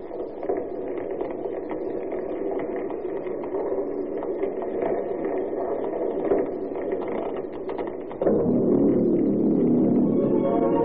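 Old radio-drama sound effect of a ship burning: a steady crackle of flames over a dull hiss. About eight seconds in, a louder music bridge cuts in.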